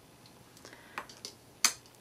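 Light ticks of tweezers and a clear plastic spoon against a small pot of glitter as a paper flower is coated. One sharper click comes near the end.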